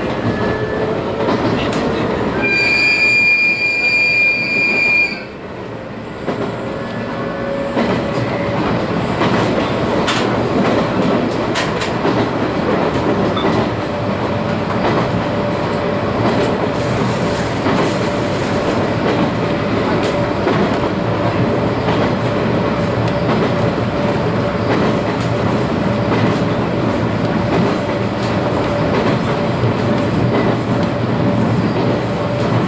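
Running noise inside a JR East 719 series electric train's motor car at speed: a steady rumble with irregular rail clicks, and from about eight seconds in a steady whine. About two and a half seconds in, a piercing high steady tone sounds for nearly three seconds, then the running noise drops briefly and builds back up.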